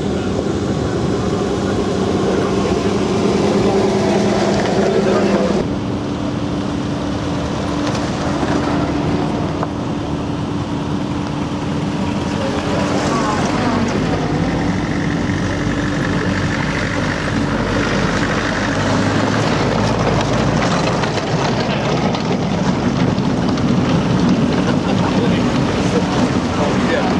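Engines of old military vehicles, a truck, a Land Rover and a WWII jeep, driving past one after another on a dirt track. Their steady engine notes change abruptly about six seconds in, over a constant wash of tyre and wind noise.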